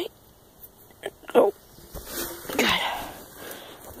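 Short strained grunts and breathy exhales from a person prying open a stiff carpeted floor hatch on a boat, with a small click about a second in.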